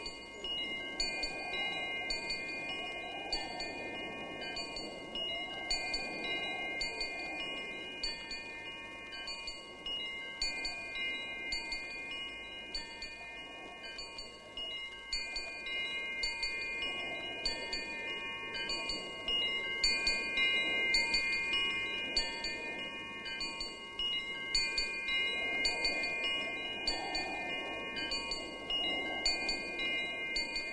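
Chime-like ringing tones: several notes held and overlapping, changing every few seconds, over a soft rushing sound that swells and fades, with a faint regular ticking.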